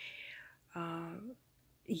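Quiet speech only: a woman's breathy, whispered murmur, then a short voiced sound held about half a second that rises in pitch at its end.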